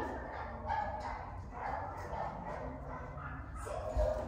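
A dog whining in several short, soft whimpers.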